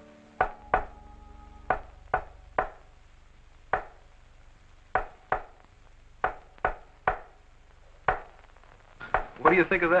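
Sharp clicks at irregular spacing, about a dozen over nine seconds, from a radio loudspeaker: a strange coded signal being picked up by a radio receiver. A faint tail of theremin music fades out at the start, and men's voices come in near the end.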